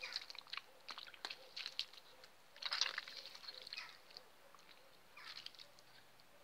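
Boiled banana peels, lemon and cabbage leaves squeezed by hand in a pot of their cooking water: faint wet squelching and crackling in short scattered bursts, with a longer patch of it a few seconds in.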